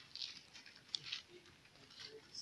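Faint footsteps of slippers scuffing on a dirt road: a few soft, short pats about a step apart.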